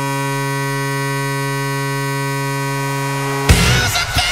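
Columbus Blue Jackets arena goal horn sounding one long, steady, low blast. About three and a half seconds in, a loud cannon shot cuts in and a busier mix of music and noise takes over.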